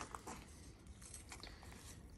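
Faint, scattered scratching and crumbling of a wooden stick worked through potting compost around the inside edge of a terracotta pot, loosening the soil so the seedlings can be lifted.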